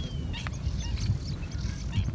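Wetland water birds calling: a quick run of short, high calls about half a second in, over a low steady rumble.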